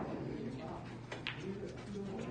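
Indistinct voices murmuring in the background, with a few faint short knocks.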